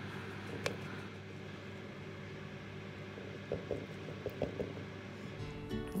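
A steady low hum, with a single sharp click about two-thirds of a second in and a few soft taps and squishes in the second half as mustard is spooned into a bowl of oil and honey.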